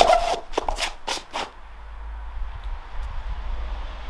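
A few sharp clicks of high heels stepping on icy brick paving in the first second and a half, then a quieter steady low rumble.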